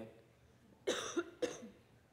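A short cough about a second in, followed by a smaller second one about half a second later.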